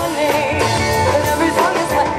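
Live rock band playing at full volume: electric guitars, bass guitar and drums, with a woman singing lead into a microphone.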